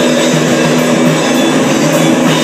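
Live rock band playing an instrumental passage: electric guitar and bass holding and shifting notes over a drum kit, loud and steady.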